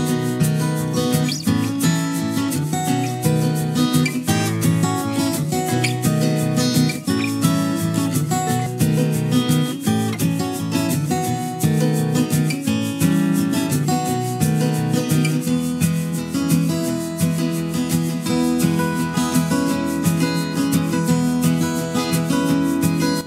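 Background music with acoustic guitar.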